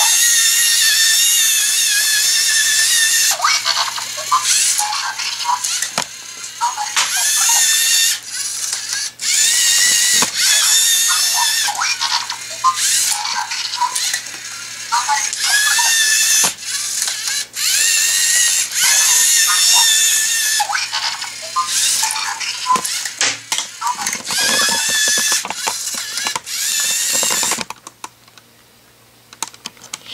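LEGO Mindstorms EV3 SPIK3R robot's servo motors whining at a high pitch as it crawls, starting and stopping in spurts, with gear clicks and a few sharp knocks.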